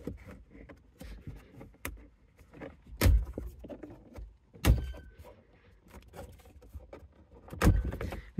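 Plastic dash trim clips snapping loose as an upper dashboard panel is pried up by hand: three sharp pops about 3, 4.5 and 7.5 seconds in, with lighter clicks and plastic rustling between.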